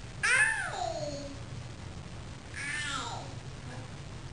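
A toddler's voice giving two meow-like calls in imitation of a cat, one about a quarter-second in and a shorter one near three seconds, each rising then falling in pitch.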